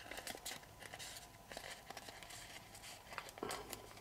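Faint, scattered crinkling and crackling of a sheet of origami paper being creased and folded by hand.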